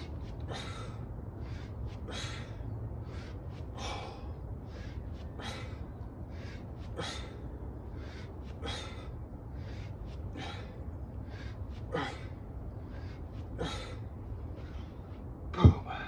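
A man breathing hard in rhythm with two-handed kettlebell swings, a sharp breath about twice a second. Near the end a loud thud as the kettlebell is set down on the concrete.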